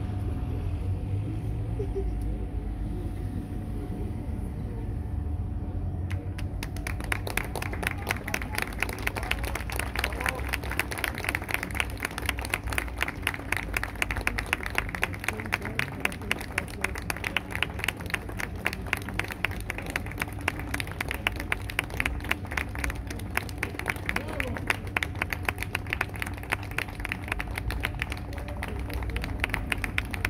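Audience applauding, the clapping starting suddenly about six seconds in and keeping up steadily. Before it there is only a low steady hum.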